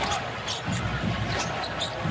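Basketball bouncing on a hardwood court over the steady noise of an arena crowd.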